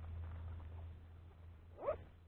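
A low steady rumble, with one short animal call rising in pitch near the end.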